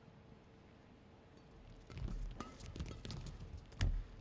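Badminton rally: about halfway through, a serve opens a quick exchange of sharp racket strikes on the shuttlecock, about five hits in two seconds, the loudest hit near the end.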